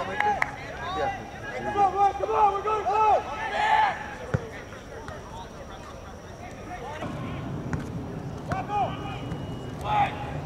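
Players shouting and calling across a soccer field, distant and indistinct, with several high, drawn-out yells in the first four seconds and a few more near the end. A single sharp knock comes near the middle.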